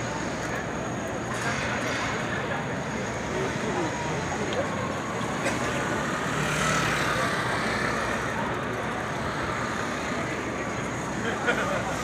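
Busy city street ambience: a steady wash of traffic noise mixed with the indistinct chatter of many people, with no single voice standing out.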